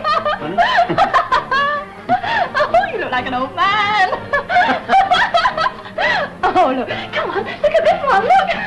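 People laughing and giggling in repeated, breathy bursts, with no break, over background music.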